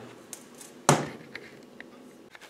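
A single sharp metallic knock about a second in, followed by a few light clicks: steel gearbox mainshaft parts being handled and set down while the hydraulic press is set up.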